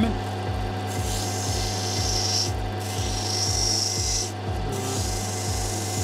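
An opal being ground on a water-fed lapidary grinding wheel over the machine's steady motor hum, with a soft regular thump a little under twice a second. A hissy grinding sound comes and goes as the stone is pressed on and eased off.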